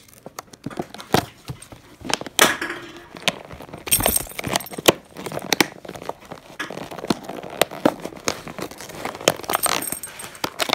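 Gift wrapping paper being torn and crumpled by hand, a dense, irregular run of rips, crinkles and sharp rustles.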